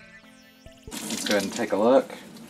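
Background music until about a second in, then a kitchen faucet running into a stainless steel sink as a dyed shirt is rinsed under it. The water stops abruptly near the end. A wavering, voice-like pitched sound rises and falls over the running water.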